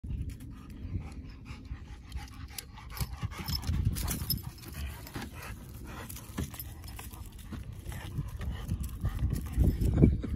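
A chocolate Labrador panting hard while carrying a log, with rustles and light footfalls on grass over a low uneven rumble.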